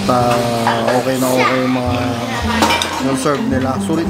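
Restaurant table clatter: dishes and cutlery clinking amid people's voices.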